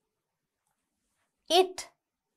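Dead silence, then a woman's voice says one word, "It", about one and a half seconds in.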